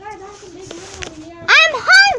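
A child's voice without words: a drawn-out low vocal sound, then, about one and a half seconds in, a loud high-pitched cry.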